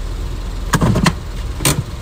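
Steady low rumble of a car's idling engine heard from inside the cabin, with three short, sharp clicks: two close together just under a second in and one near the end.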